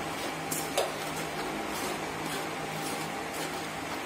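A spoon stirring and scraping dry flour in a steel sieve, soft rustling scrapes with a few light strokes against the metal, over a faint steady hum.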